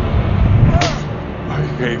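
Film whoosh effect of a wizard's staff being snatched through the air, one sharp swish about a second in, over a steady low rumble.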